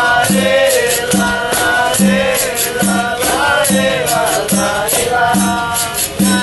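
Capoeira roda music: voices singing a chant over berimbaus, whose low note repeats a little faster than once a second, with a constant shaking rattle of caxixi and tambourine jingles.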